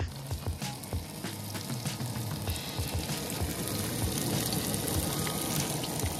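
Sliced sweet peppers sizzling in a frying pan on a camp stove, with a steady hiss and scattered small crackles and pops throughout.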